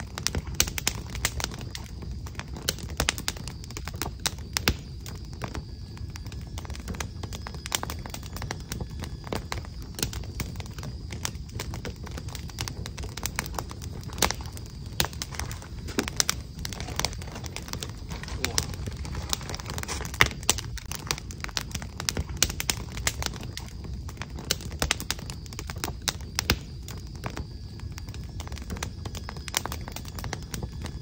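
Crackling wood fire: a fireplace ambience track of logs burning, with many irregular pops and snaps over a low rumble.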